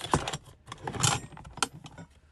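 Plastic lid and plastic dishes clattering and knocking as they are pushed into a plastic storage bin in a cabinet: several sharp knocks, the loudest just after the start and about a second in.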